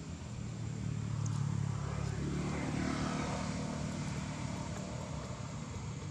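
Drone of a passing engine, swelling from about a second in and then slowly fading.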